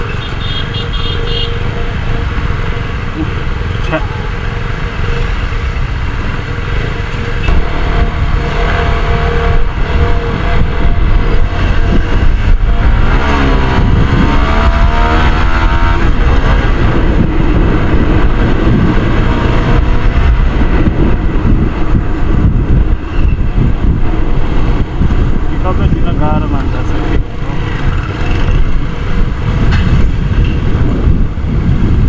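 CFMoto NK250 single-cylinder motorcycle engine running while riding, with wind noise on the microphone. It gets louder about a quarter of the way in, and the engine pitch swings up and down about halfway through.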